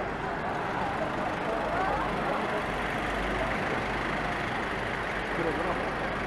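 A column of Mercedes police vans driving past at low speed, a steady mix of engine noise and tyre noise on a wet road, with indistinct voices in the background.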